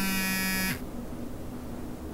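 A phone buzzing once for a notification: a single steady buzz lasting under a second, stopping shortly after the start.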